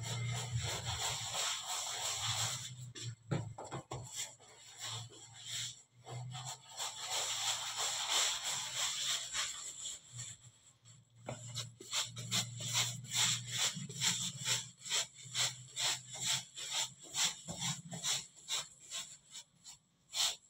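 Hands rolling long ropes of dough back and forth on a floured worktable: a quick run of short rubbing strokes, about two to three a second, through the second half. Before that, a steadier hiss over a low hum.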